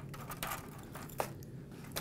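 Faint handling sounds of brittle honeycomb toffee pieces being gathered off baking parchment on a tray: light scrapes and small clicks, with one sharper click about a second in.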